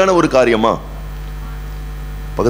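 Steady low electrical mains hum, heard on its own once a man's speech breaks off about three quarters of a second in.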